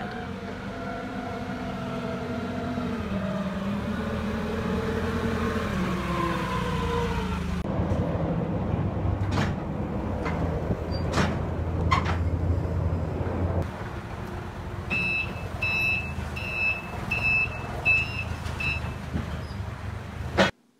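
Propane-powered Cat forklift running, its engine pitch rising and falling as it drives, with a few sharp knocks while it works in the trailer. Near the end its reversing alarm beeps about six times in a steady series.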